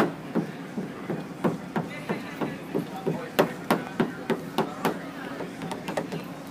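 A quick series of sharp knocks, about three a second, louder in the middle of the run.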